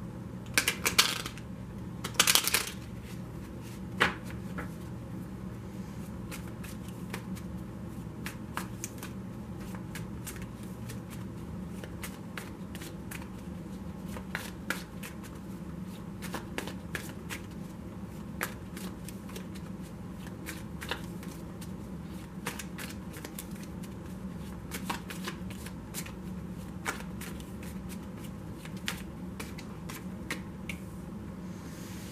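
A deck of tarot cards being shuffled by hand: quick, irregular soft clicks and slaps of cards against each other, with a few louder rustling bursts in the first few seconds, then a quieter, steady run of shuffling.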